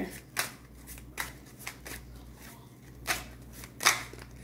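A deck of tarot cards being shuffled by hand: a string of short, irregular card slaps and riffles, the two loudest about three seconds in and just before the end.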